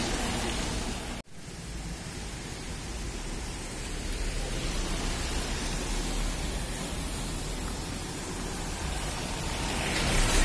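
Steady roadside traffic noise: an even hiss with a low rumble, with no single engine standing out. It cuts out sharply for a moment about a second in.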